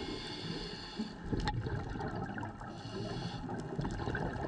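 Underwater sound of a scuba dive, heard through the camera housing: water noise and bubbling, with a hiss of about a second twice, the pattern of a diver breathing through a regulator.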